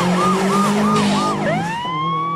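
A siren-like wailing tone that swoops down in pitch about three times a second. About one and a half seconds in it changes to a tone that rises and then holds. A steady low hum runs underneath.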